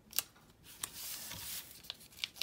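Faint handling of a paper sticker sheet being folded and pressed flat by hand: two crisp paper clicks in the first second and a soft rub of fingers across the paper in the middle.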